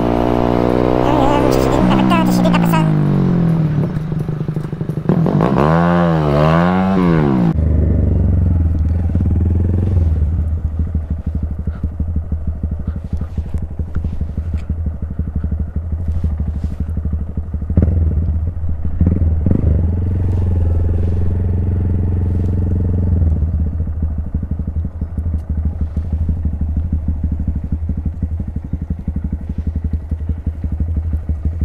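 Honda Grom's small single-cylinder engine, heard from on the bike: it rises and falls in pitch for the first several seconds, then settles to a steady low-rev running hum, with a few brief knocks past the middle.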